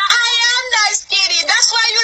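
A woman's voice, loud and high-pitched, talking in a quarrel with the pitch swinging up and down in a sing-song way. There is a brief break about a second in.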